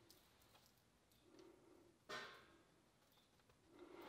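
Near silence, with one brief soft sound about two seconds in as a ball of cookie dough is set down and pressed onto a parchment-lined baking sheet.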